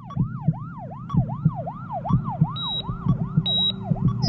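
Produced TV break bumper sound effect: a siren-like electronic wail sweeping up and down nearly three times a second over a regular low thump, with short high beeps joining in the second half.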